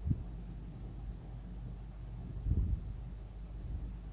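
Steady low background hum with two dull low thumps, one right at the start and one about two and a half seconds in.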